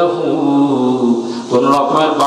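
A man's voice chanting a long drawn-out melodic phrase into a microphone, the tone held and sliding slowly. A brief break about a second and a half in, then the next phrase begins. This is the sung, intoned delivery of a waz sermon.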